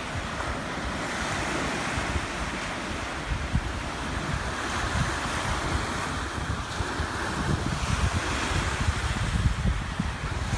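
Lake waves breaking on a sandy shore, with wind buffeting the microphone in low gusty rumbles that grow stronger near the end.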